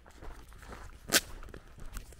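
Footsteps on a dirt and gravel road at walking pace, with one sharp, much louder scuff about halfway through.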